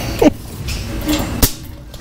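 Forklift engine running in a steady low rumble, with one sharp click about one and a half seconds in and a short vocal sound near the start.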